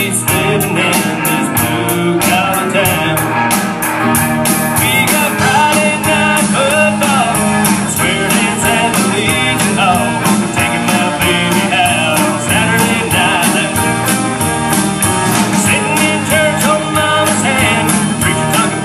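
Live band playing amplified rock music with guitars and a steady drumbeat.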